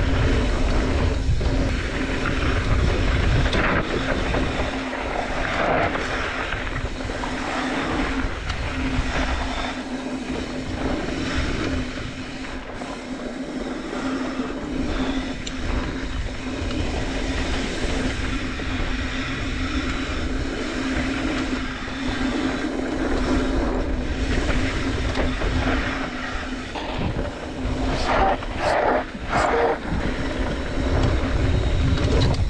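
Trek Slash mountain bike riding downhill on dirt trail: wind rushing over the camera microphone, tyres rolling and rattling over dirt and small rocks with frequent jolts, over a steady hum.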